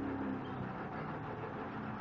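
Steady low background rumble with a faint hum that fades out about a second in; no stitching or machine noise stands out.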